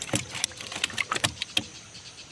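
An irregular run of sharp clicks and light knocks, about a dozen in two seconds, over a faint steady high-pitched insect drone.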